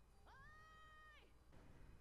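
A faint single pitched call, about a second long, that rises at its start, holds steady and drops away at its end, over near silence.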